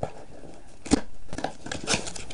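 A hermit crab kit's packaging being opened and handled: one sharp click about a second in, then a few lighter clicks and rustles.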